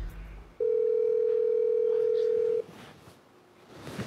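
Telephone ringback tone of an outgoing call: one steady tone about two seconds long, starting about half a second in, then a quiet pause.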